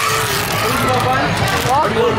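Wrapping paper being torn and rustled as a present is unwrapped, over loud background chatter of many voices.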